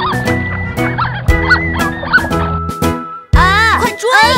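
Children's cartoon background music with short cartoon duck quacks over it, and a louder vocal cry near the end.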